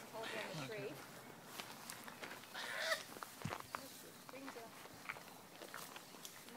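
Faint, indistinct voices with scattered light clicks and rustles.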